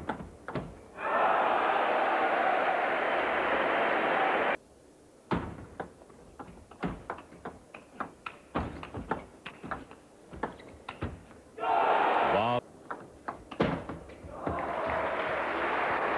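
Table tennis rally: quick, irregular clicks of the ball striking paddles and table. Bursts of crowd noise come between points, the loudest about a second in, cut off suddenly after some three seconds, with another short burst later and crowd noise building again near the end.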